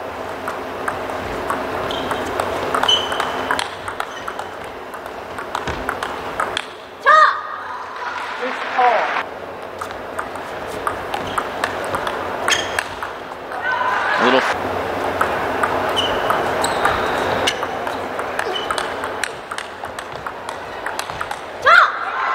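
Table tennis rallies: the ball clicks back and forth off the rackets and the table over the steady noise of a crowded hall. Short shouts ring out a few times between or at the end of points.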